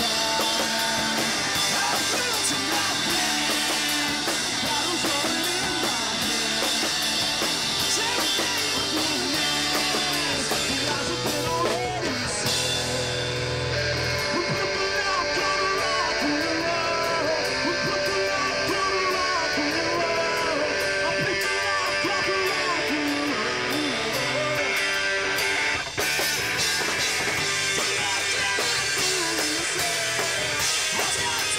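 Rock music with guitar and drums, playing continuously; the treble thins out about twelve seconds in and comes back after a brief drop near the end.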